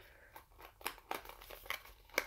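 A small cardboard advent calendar box being worked open by hand: scattered soft crinkles and sharp little clicks of card and paper.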